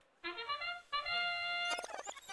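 Field sound cue marking the start of a FIRST Robotics Competition match: a short electronic tune of a few quick notes followed by one longer held note.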